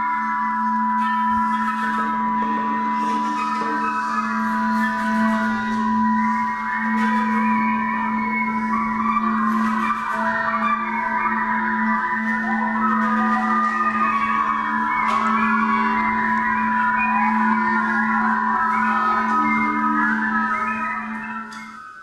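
A conducted group improvisation: a steady low drone and a steady high held tone, under many overlapping high pitches that waver and glide. The pitches grow denser partway through, and it all stops abruptly near the end.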